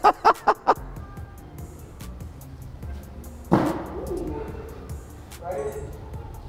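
A man laughing in a quick run of short bursts, about six a second, which stops within the first second. Background music runs under it, and a sudden short sound cuts in about three and a half seconds in.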